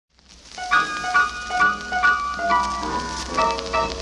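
Opening bars of a 1963 traditional black gospel recording, fading in from silence: pitched instrumental notes in a steady rhythm of about two a second, over a constant low hum.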